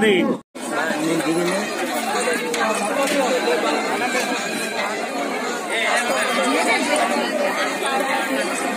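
Dense crowd of many people talking at once: a steady bustle of overlapping voices with no single speaker standing out. It follows a brief cut to silence about half a second in.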